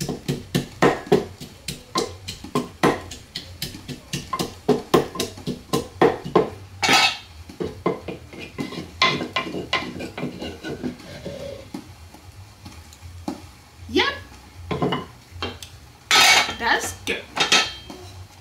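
Wooden pestle pounding fresh hot peppers in a wooden mortar: steady knocks about three a second, then slower and more irregular after about seven seconds, with a louder flurry of knocks near the end.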